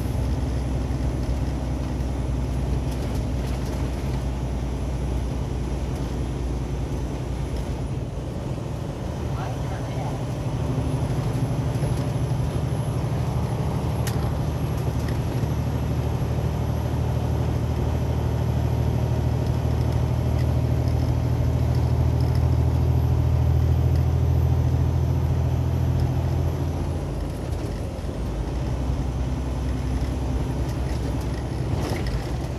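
Vehicle engine droning low with road and tyre noise, heard from inside the cab while driving. The drone grows louder about a third of the way in and eases off again shortly before the end.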